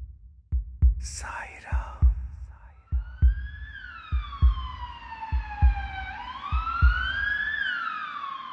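Heartbeat sound effect: paired lub-dub thumps a little over a second apart, stopping near the end. A whoosh comes about a second in, then a siren-like wail that slides slowly down, rises again and falls near the end.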